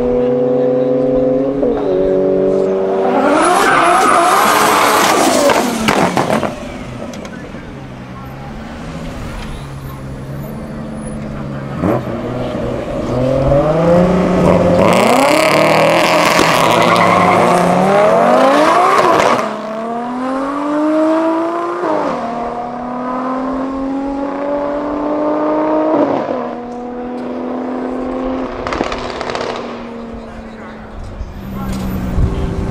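Turbocharged drag cars, an RB25DET-powered Nissan 200SX (S13) and a Subaru Impreza, accelerating flat out down the strip. The engine note climbs and drops back at each upshift, loudest in a climb a few seconds in and again in the middle, then steps up through the gears as the cars pull away.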